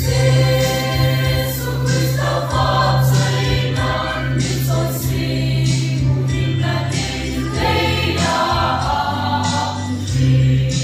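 A mixed church choir singing a Christmas hymn in unison and parts, over a steady low sustained accompaniment note.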